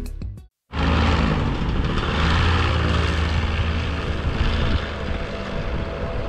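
Microlight trike's engine and propeller running steadily. The sound cuts in suddenly under a second in, as a low drone with a hiss over it.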